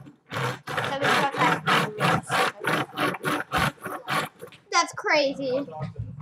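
A child's voice: a quick run of short syllable-like sounds without clear words, then a long vocal sound sliding up and down in pitch near the end.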